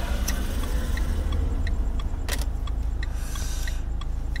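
Steady low rumble of a car's engine and road noise heard inside the cabin while driving, with a faint regular ticking about every two-thirds of a second. There is a sharp click a little past two seconds in and a soft hiss near the end.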